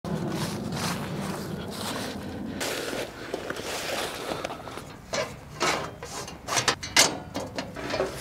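Footsteps and rustling in dry fallen leaves, then a few sharp clanks and rattles as a folding metal mesh fire pit is unpacked and opened out, the loudest near the end.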